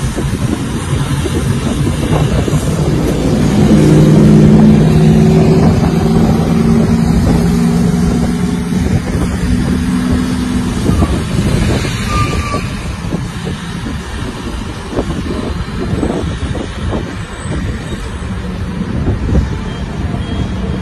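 Heavy military trucks in convoy driving past on a wet highway: engines droning and tyres on the wet road, growing loudest about four to five seconds in as a truck passes close, then easing off as more trucks follow.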